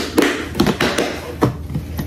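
A plastic lid is pressed and snapped onto a clear plastic container of seasoned flour, giving a handful of light taps and clicks.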